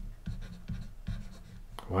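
Stylus writing on a tablet surface, a few short strokes as a word is written by hand.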